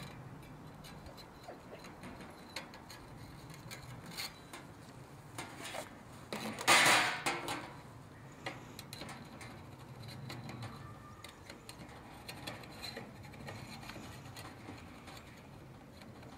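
Light metal clinks and scrapes as a hand saw and a steel skull-cutting jig are handled, with one louder scrape lasting about a second some seven seconds in.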